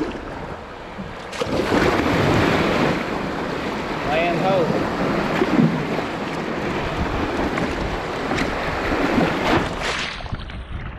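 Small surf breaking around a kayak and water rushing along its hull, with wind buffeting the microphone. The wash grows louder about a second and a half in and stays loud.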